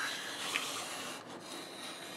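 A circle cutter's blade scraping steadily through red cardstock as its arm is swung round the pivot, cutting out a circle.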